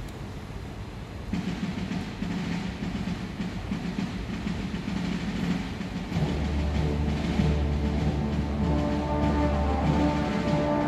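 Show band's opening: a rolling drum rumble starts about a second in and builds, then about six seconds in the brass come in with held low chords.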